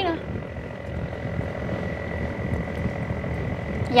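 Steady low rumble of a river sand barge's engine running, with a faint steady high whine above it.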